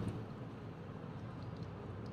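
Quiet, steady pour of thick glycerin watercress extract from a glass beaker onto a strainer, over a low steady hum.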